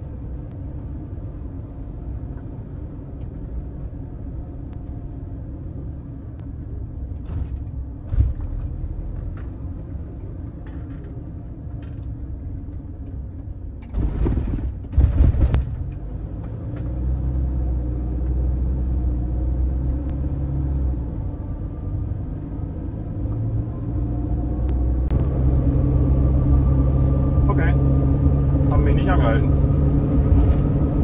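Mercedes Sprinter van's diesel engine and road noise heard from inside the cab while driving, a steady low rumble. About halfway through there is a brief loud rumbling burst, and in the second half the engine note steadies and grows louder.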